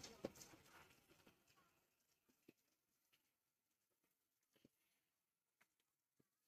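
Near silence, with a few faint, isolated clicks, one just after the start.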